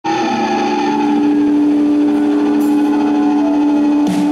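Electric guitars through amplifiers holding one steady, ringing chord, with no drums.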